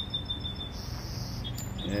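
A thin, steady high-pitched call from a small creature for about the first second, then a short higher buzz, over a steady low hum.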